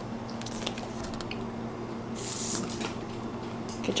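Dog licking and smacking at whipped cream, a run of soft, wet clicks over a steady low hum.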